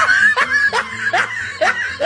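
Laughter in short, sharply rising bursts, about two or three a second.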